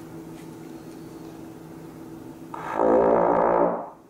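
Tenor trombone with an F attachment playing a single held pedal B-flat in first position, the lowest note playable in that position, lasting about a second and a half near the end. Before the note there is a faint, steady room hum.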